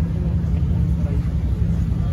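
Pagani hypercar's V12 engine running steadily at low revs as the car creeps forward at walking pace, with a low, even hum.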